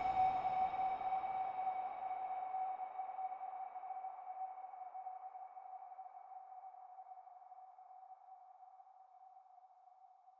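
Logo sting: one struck bell-like tone ringing out with a fainter higher overtone, slowly fading away.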